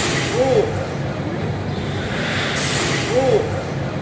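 VR roller-coaster motion-simulator seat working, with a hiss and a short rising-and-falling squeal that come twice, about three seconds apart. Steady amusement-hall noise runs underneath.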